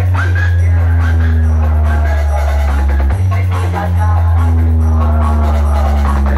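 'Power music' DJ track played very loud through a large amplifier-and-speaker-box sound system, dominated by long held deep bass notes that change about three seconds in, with a fainter melody above.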